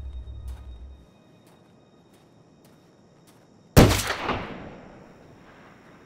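A low music drone fades out, then a single gunshot rings out about four seconds in, its echo dying away over about two seconds.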